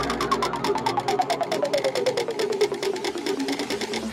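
Minimal techno breakdown with the kick and bass dropped out: a rapid, even stream of short clicky synth notes that slides steadily down in pitch.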